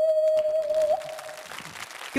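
A clear, steady high note blown on a small piece of ox horn held to the lips, the held closing note of a melody. It has one brief upward flick about a second in and dies away about a second and a half in.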